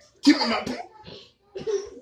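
A person coughing once, a short harsh burst about a quarter second in, mixed with a man's voice saying a word. A second short vocal sound comes near the end.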